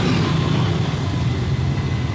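Motorcycle traffic running over a railway level crossing close by, a steady engine rumble with no break.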